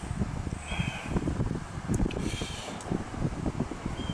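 Wind rumbling on the microphone while a steel screw is unscrewed from a plastic suspension arm with a screwdriver, with the nut held in vise grips. A faint click is heard about two seconds in.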